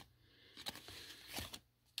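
Faint rustle of cardboard trading cards sliding against one another as a stack is flipped through by hand, from about half a second in until shortly before the end.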